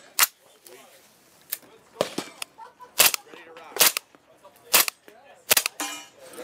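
Sig Rattler in 300 Blackout firing subsonic rounds through a Banish 30 suppressor: several suppressed shots, the loudest roughly a second apart, each a short sharp crack.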